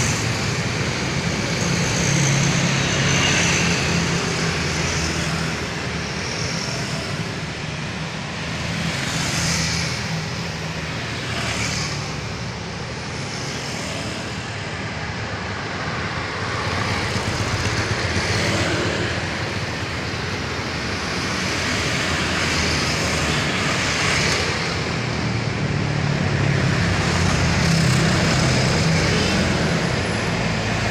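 Road traffic passing close by: motorcycles, cars and trucks driving past one after another, with tyre swishes as each goes by. A low engine hum is loudest near the start and again near the end, as a truck approaches.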